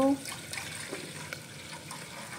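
Water pouring in a steady stream from a plastic jug into an aluminium saucepan of milk.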